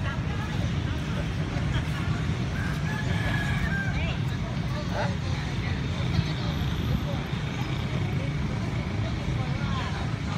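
Outdoor background ambience: a steady low rumble with faint voices of people around.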